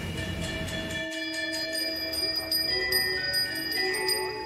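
Metal bells ringing: many overlapping, sustained bell-like tones at several pitches, struck again and again, with new tones joining partway through.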